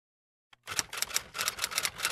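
A title sound effect: a rapid, irregular run of clicks, typewriter-like, that starts about half a second in and cuts off suddenly after about a second and a half.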